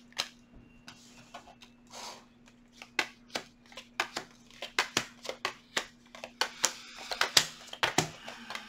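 Tarot cards being shuffled and handled on a table: irregular sharp snaps and slaps, sparse at first and coming thick and fast from about three seconds in, over a faint steady hum.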